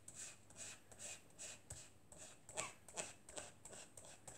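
Foam ink blending tool dabbed and rubbed over a stencil on card: faint, soft brushing scuffs repeated about three times a second.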